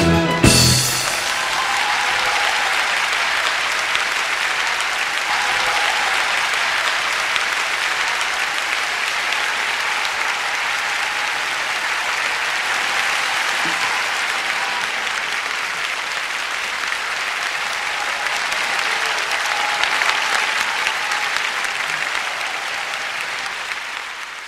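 A concert audience applauding steadily after the song's last chord, which cuts off about half a second in. The applause eases off slightly near the end.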